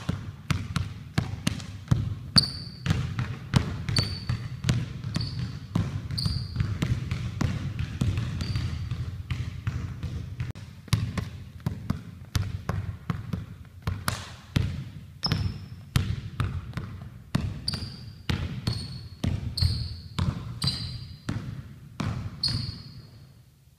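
Basketball being dribbled on a hardwood gym floor, a steady run of bounces about two to three a second, with short high sneaker squeaks on the floor coming and going.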